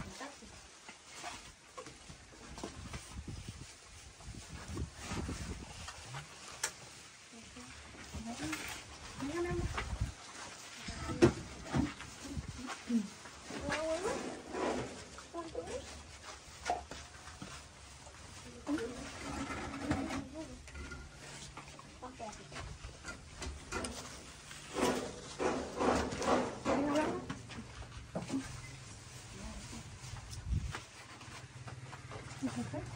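Indistinct voices talking in the background, loudest in a few stretches toward the middle and end, over scattered light clicks and rustles from plates and packaging being handled.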